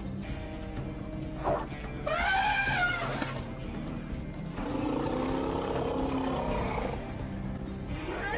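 African elephant trumpeting: one loud, high blast about two seconds in that rises and falls, over background music. A lower, longer call follows about five seconds in.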